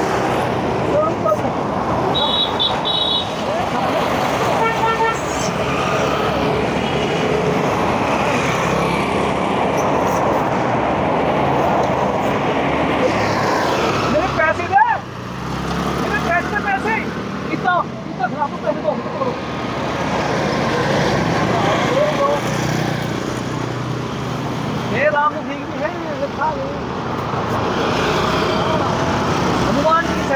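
Steady road traffic noise with a vehicle horn tooting briefly about five seconds in, and short voices or calls here and there.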